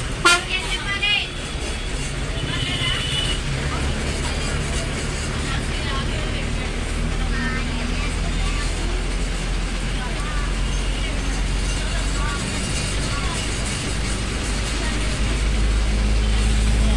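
A city bus's engine running steadily under the cab's engine cover while the bus drives, its low hum growing slowly louder toward the end. A short high horn toot sounds about three seconds in.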